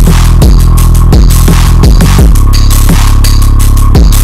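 Loud electronic music: deep sustained bass notes under a dense pattern of sharp drum hits and hissing cymbal sounds.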